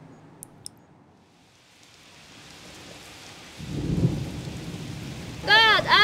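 Rain sound effect fading in, joined about three and a half seconds in by a low rumble of thunder.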